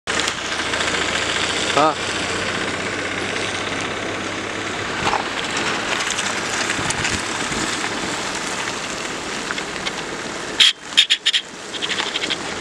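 Steady road and wind noise of a car driving on a rough dirt track, with a short wavering voice about two seconds in. Near the end the noise cuts out and a few sharp clicks follow.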